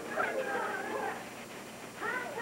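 High-pitched, whiny vocal sounds in a few short calls that glide up and down, loudest in the first second and fading toward the end.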